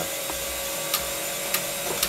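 Injector test stand running a hold (open-injector) flow test: its pump motor gives a steady hum with a faint hiss, with cleaning fluid flowing through four injectors held wide open into collection bottles.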